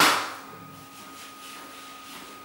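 A single sharp bang right at the start, dying away over about half a second in the tiled room.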